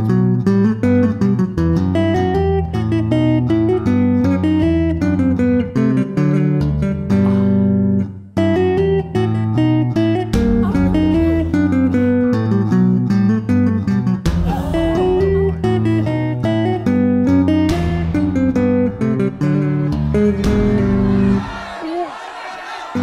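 Solo electric bass playing fast classical-style scale and arpeggio runs, two-handed tapping. The notes break off briefly about eight seconds in, and the playing stops just before the end.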